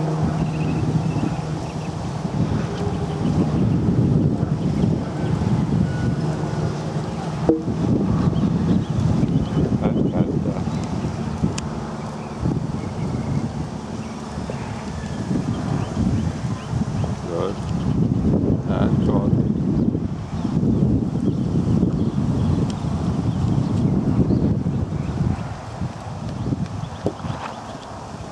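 Wind buffeting the microphone, a dense low rumble that rises and falls, with faint indistinct speech at times.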